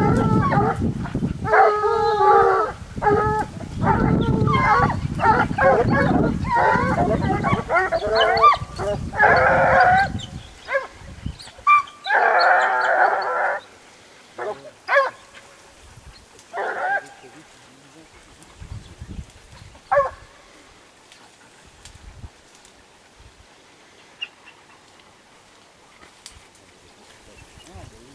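Hunting hounds baying in thick brush on a wild boar hunt: a run of long, pitched calls for about the first fourteen seconds, then only a few scattered calls.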